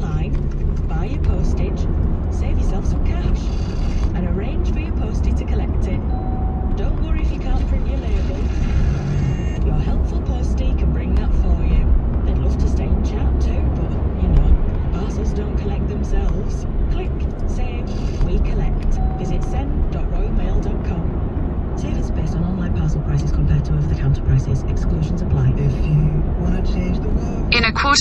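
Steady low road and engine rumble inside a moving car's cabin, with a car radio playing faintly underneath.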